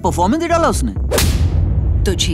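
A sharp, whip-crack-like trailer sound-effect hit about a second in, its tail fading over most of a second, over a steady low rumble. A spoken line comes just before it.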